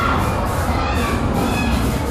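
Background din of a crowd of children talking and shouting, a steady noise with no single sound standing out.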